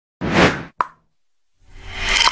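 Edited-in transition sound effects: a burst of noise about half a second long followed by a short, sharp pop, then another sound rising in near the end.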